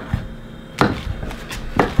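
Kitchen knife chopping chanterelle mushrooms on a wooden cutting board: three sharp knocks of the blade on the board, about a second apart.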